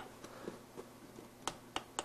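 A few faint, scattered clicks from fingers pressing the plastic buttons and housing of a digital tire inflator's control panel over quiet room tone, the sharpest about one and a half seconds in; the compressor is not running.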